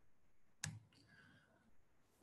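Near silence broken by a single short, sharp click about two-thirds of a second in.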